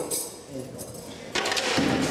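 A man's voice, indistinct, then a sudden loud burst of noise about a second and a half in.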